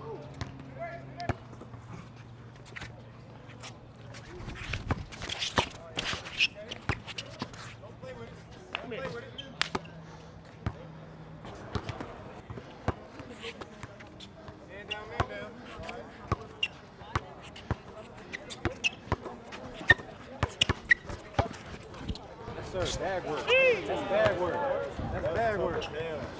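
A basketball being dribbled on an outdoor hard court, irregular bounces throughout, over a background chatter of spectators' voices that grow louder near the end.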